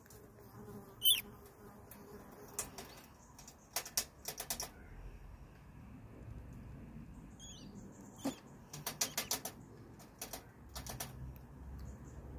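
A rat shifting about inside a wire-mesh cage trap, knocking and rattling the metal bars in scattered sharp clicks, with a quick run of clicks about nine seconds in.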